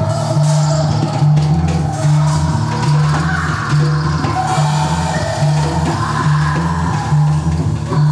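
Live band music led by a drum kit with cymbals, over a low bass line that repeats about once a second.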